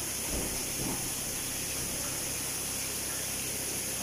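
A steady high hiss, with faint voices briefly near the start.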